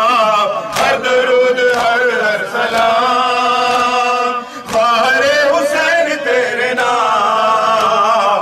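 A group of men chanting a nauha (Urdu mourning lament) in unison, long held notes rising and falling, with a few sharp slaps of hands striking chests in matam.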